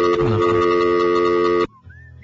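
A loud, sustained electronic chord of several steady tones, with a short falling sweep early on, cutting off suddenly near the end.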